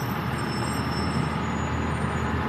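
Tour trolley driving along: steady low engine rumble with road noise, heard from the open-sided passenger seating.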